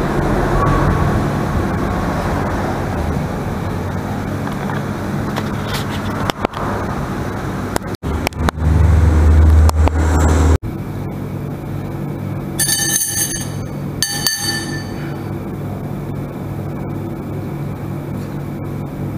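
Steady background noise of passing road traffic and room hum in an open-fronted restaurant. A heavy low rumble lasts about two seconds near the middle and cuts off abruptly, and two short high-pitched beeps follow a few seconds later.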